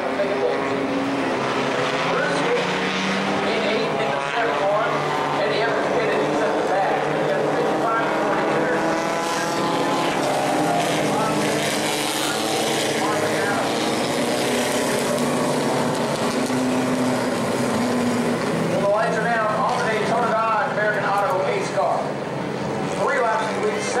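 Race car engines running on an oval track, a steady multi-tone drone whose pitch rises and falls as the cars circle. Voices talk over it near the end.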